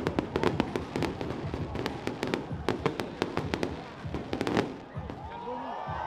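Fireworks crackling: rapid, irregular sharp cracks and pops that stop just before five seconds in. Near the end a sustained tone with slowly bending pitch begins.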